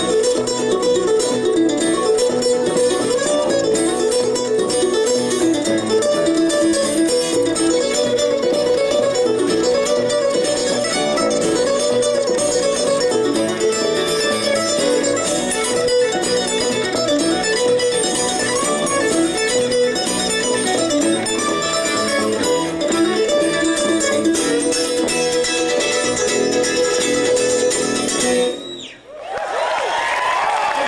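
Live acoustic bluegrass string band playing an instrumental tune: fiddle, mandolin, acoustic guitar and upright bass together, with no singing. Near the end the music cuts off suddenly and applause begins.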